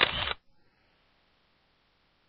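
A woman's voice ending a word, then near silence for the rest of the time.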